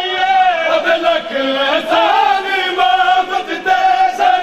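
A man chanting a noha, a Punjabi Shia mourning lament, in a loud melodic line that bends and wavers in pitch.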